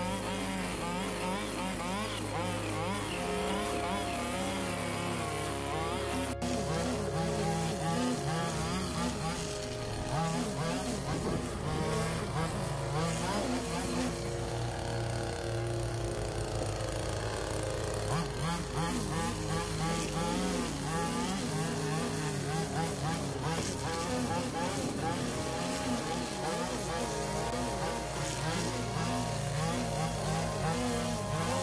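Stihl line trimmer engine running near full throttle throughout, its pitch wavering up and down as the spinning line cuts grass.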